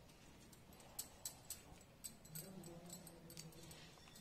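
Near silence with a few faint clinks of glass bangles as hands stuff spice masala into green chillies, and a faint low hum for about a second in the second half.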